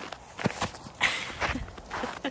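Footsteps crunching on packed snow, about four uneven steps.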